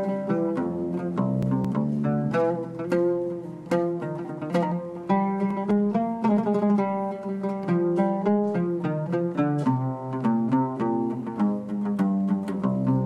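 Solo oud played with a plectrum: a steady stream of plucked notes forming a melody, each note starting with a sharp pluck and ringing briefly.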